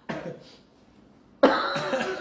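A man coughing twice, two short sudden coughs about a second and a half apart, the second one louder.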